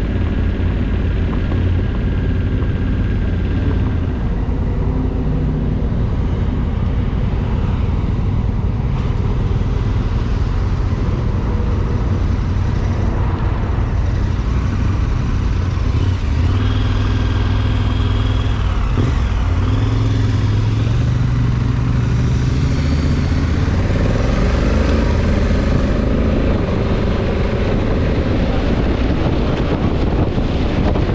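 Motorcycle engine running while riding, heard from the saddle, with its note rising and falling several times as the rider works the throttle and gears, over steady road noise.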